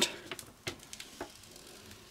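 Faint, sparse ticks and crackles of a paper adhesive backing liner being slowly peeled off a flexible print sheet.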